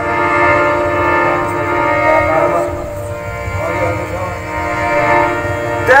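Harmoniums playing held chords as a short instrumental interlude between sung lines of a qawwali, with tabla underneath; the chords soften a little midway.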